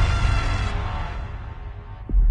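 Cinematic trailer music: a deep, low held sound with faint sustained tones, fading away.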